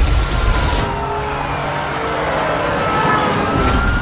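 Police car sirens wailing, several tones sliding up and down at once, over a loud rushing noise that drops away about a second in.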